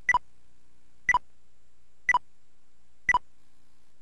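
Electronic beep sound effect repeating about once a second, each a short two-tone pip stepping from a higher to a lower pitch, with nothing else under it.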